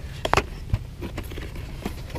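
A small black cardboard product box being opened by hand: a sharp click about a third of a second in, then light taps and rustles of the packaging flaps.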